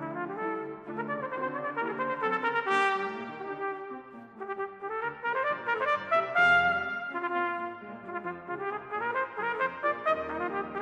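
Solo cornet playing fast runs of quick notes over a brass band accompaniment, reaching a high note about three seconds in and at its loudest a little past the middle.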